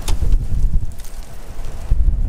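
Wind rumbling on the microphone, with a sharp knock right at the start and a few lighter knocks after it from gear being handled in a pickup's rear cab.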